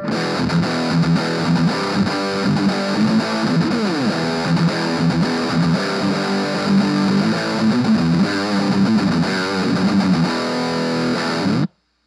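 Electric guitar played through an Orange Crush 20 amp's dirty channel at full gain, with the mid knob boosted to 8, playing a continuous distorted metal riff. It cuts off abruptly just before the end.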